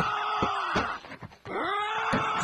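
A cartoon character's wordless, drawn-out yell of rage, heard twice: once in the first second and again from about one and a half seconds in, the second starting with a drop in pitch.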